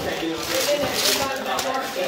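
Indistinct voices talking while wrapping paper is torn and rustled off a gift box, with a burst of crackling paper about a second in.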